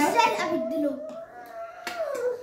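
A child's voice making a long, drawn-out vocal sound on one steady held pitch, with a second, lower voice wavering beneath it for about the first second and a short click near the end.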